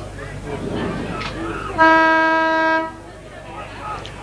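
Football ground siren giving one steady, horn-like blast of about a second, signalling the start of the second quarter, over crowd chatter.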